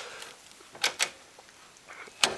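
Two sharp clicks in quick succession a little under halfway through, followed by a few fainter taps: handling noise from the equipment or the camera.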